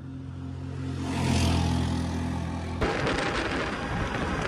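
Steady low hum of a car driving on a highway. About three-quarters of the way through it cuts off abruptly and gives way to rough wind noise buffeting the microphone.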